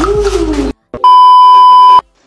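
Voices cut off short, and after a brief gap a loud steady electronic beep tone, like a censor bleep, sounds for about a second and stops abruptly.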